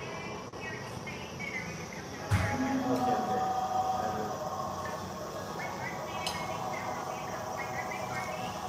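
Indistinct talk and background chatter around a restaurant table, with a voice getting louder about two seconds in.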